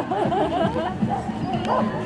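A dog barking in short calls over a background of people, with laughter.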